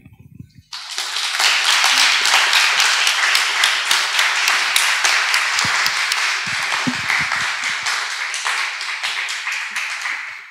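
Audience applauding: many people clapping, starting about a second in and dying away near the end.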